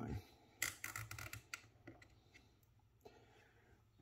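Faint clicks and scrapes of a plastic action figure and its display stand being handled and posed, with a quick run of clicks from about half a second to a second and a half in and a few scattered ones after.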